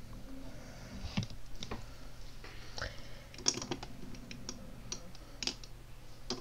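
Irregular light clicks and taps of small makeup tools and cases being handled close to the microphone, about eight in a few seconds.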